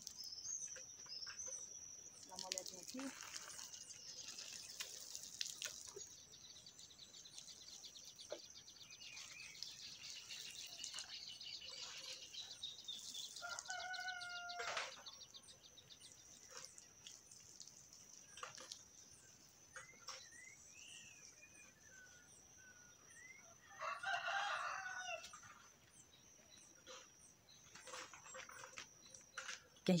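Faint rooster crowing: one crow a little before halfway through and another a few seconds before the end, each lasting about a second and a half.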